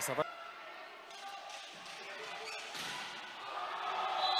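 Indoor volleyball arena ambience between rallies: a ball bouncing on the court floor over the faint murmur of the hall.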